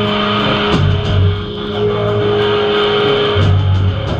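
Live hardcore/metalcore band playing loudly: distorted electric guitar and bass guitar holding low notes that change every second or so, with drums underneath.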